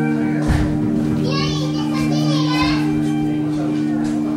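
Live improvised drone music from a satvik veena, crystal bowl and contrabass ensemble: a steady low drone is held throughout, while high, wavering, sliding notes rise and fall from about a second in to near the middle. A low thump sounds about half a second in.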